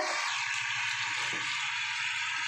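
Nigella seeds and green chillies sizzling steadily in hot mustard oil in a wok.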